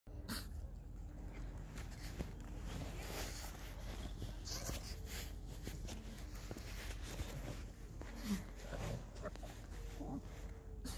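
A pug's short, scattered noisy breaths and snuffles, the loudest about eight seconds in, over a steady low rumble.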